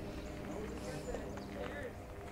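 Indistinct voices talking in the background over a steady low hum, with a few faint clicks.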